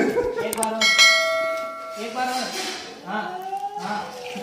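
A bell struck once about a second in, ringing for about a second before it fades, with voices around it.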